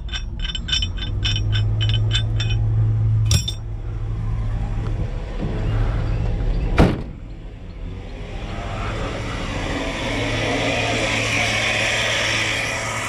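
Steel recovery shackles and chain clinking as they are handled, about five chinks a second for the first few seconds, over a vehicle engine idling. A knock follows, then one hard slam about halfway through as the rear liftgate is pulled shut. An even rustling noise fills the end.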